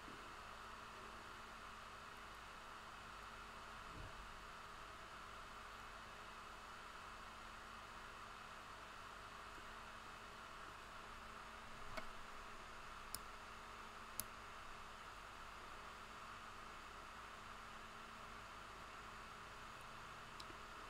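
Near silence: a steady faint hiss of room tone, with a few faint clicks a little past the middle.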